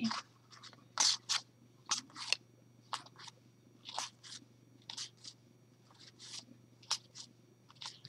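Oracle cards slid one at a time off a hand-held deck, each card rubbing over the next with a short papery swish, about two or three a second.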